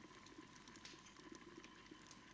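Near silence: faint room tone with a few weak, scattered ticks.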